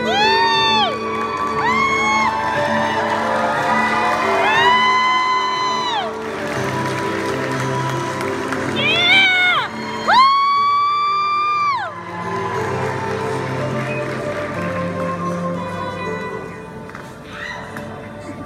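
Audience cheering with loud, drawn-out 'woo' whoops, several of them, each rising at the start and falling away at the end, over background music.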